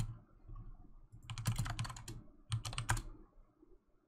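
Computer keyboard typing in short bursts of keystrokes: a brief burst at the start, a longer run about a second and a half in, and a shorter run near the three-second mark.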